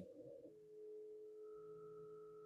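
Near silence with a faint, steady hum of several pitched tones that begins about half a second in, joined by a higher tone later on.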